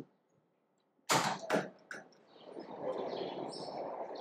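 Near silence, then two short sharp noisy sounds about a second in, followed by steady city street background noise with birds chirping.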